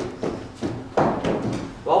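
A cricket bowler's quick footfalls on the artificial-turf floor of an indoor net during the run-up, a few short thuds, then a louder knock about a second in as the batter strikes the ball.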